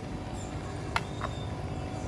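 Quiet outdoor street ambience with a low steady hum, a single sharp tap about a second in and a faint brief chirp just after.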